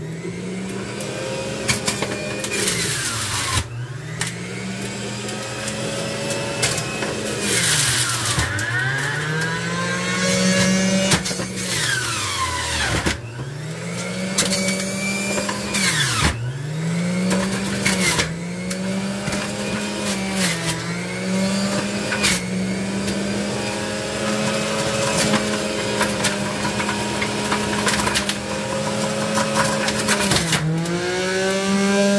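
Centrifugal juicer motor running. Its pitch sags several times as pineapple pieces are pressed down the feed chute with the pusher, then climbs back as the load clears.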